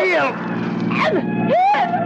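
Short voice-like calls, one falling in pitch and one rising near the end, over a steady low hum.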